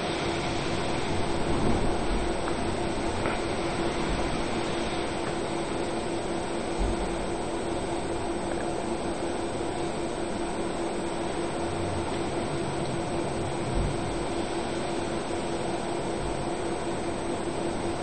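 Small desktop laminator's roller motor running with a steady hum as a sheet feeds through the heated rollers. A couple of faint soft bumps about halfway through and again near the end.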